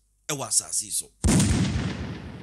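A sudden loud boom sound effect about a second in, dying away over about two seconds.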